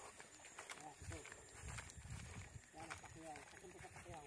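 Very quiet outdoor sound: faint speech in the distance and a few soft low thumps, from walking.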